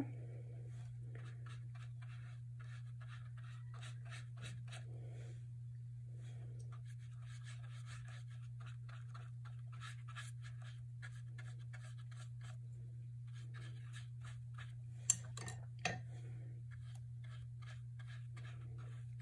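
Paintbrush stroking and scrubbing wet paint across paper, a quick run of faint scratchy strokes, with two sharper clicks near the end. A steady low hum runs underneath.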